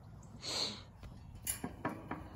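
A single short, breathy snort about half a second in, followed by a faint click.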